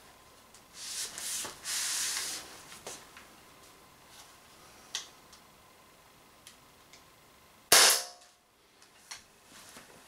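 A single sharp shot from an Umarex Walther PPQ M2 .43-calibre CO2 pistol, about three-quarters of the way in, with a brief ring after it. Before it come a few seconds of rustling handling noise and small clicks.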